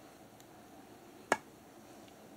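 A thrown knife striking a split firewood log and sticking in the wood: a single sharp impact a little over a second in.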